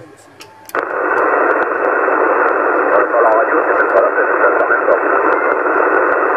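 CB radio receiver on 27 MHz upper sideband: after a short quiet gap, a loud band of static hiss comes up with another station's voice faint and hard to make out beneath it, as with a weak signal under heavy interference.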